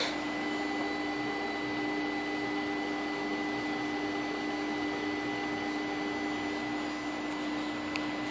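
A click, then the electric motor of an Opel Signum 2.2 swirl-flap actuator, energised from a scan-tool actuator test, giving a steady electric hum with a fixed tone. The owner judges the actuator's motor tired and its end-position sensor faulty (fault codes P1112 and P1113).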